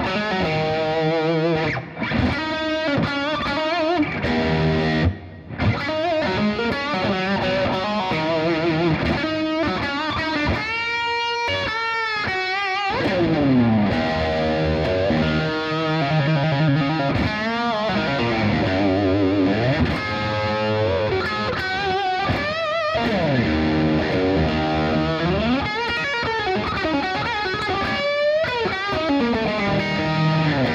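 Electric guitar played through a Boss Katana amp on a lead setting, overdriven with delay and reverb added. Single-note lead lines with string bends and wide vibrato, broken by two short gaps in the first few seconds.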